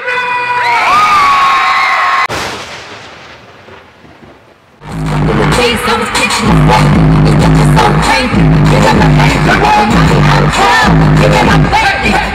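Arena crowd screaming, then a sudden cut into a fading echo. About five seconds in, a loud hip-hop track with heavy, pulsing bass starts.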